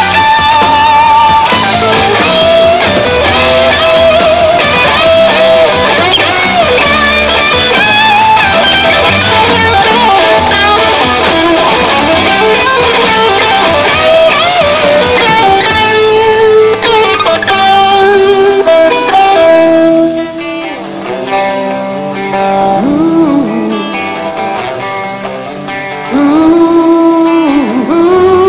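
Live rock band with a lead electric guitar playing an instrumental solo, its notes bent and wavering over the rhythm section. About 20 seconds in the band drops back and the playing thins out and gets quieter.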